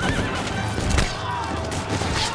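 Rifle shots, one at the start and a louder one about a second in, amid high wavering cries.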